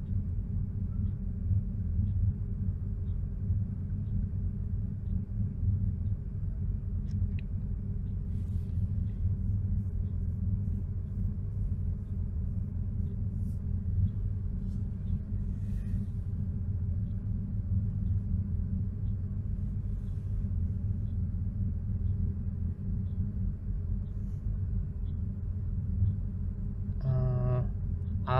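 Porsche 930's air-cooled turbocharged flat-six idling steadily at about 1000 rpm during its cold-start warm-up, heard from inside the cabin.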